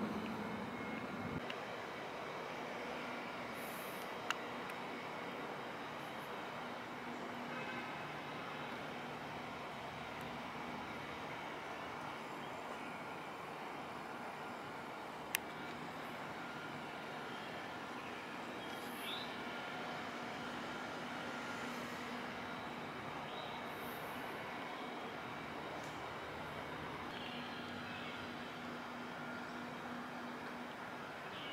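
Steady outdoor city background hum with a few faint steady tones, broken by two sharp clicks, about four and fifteen seconds in.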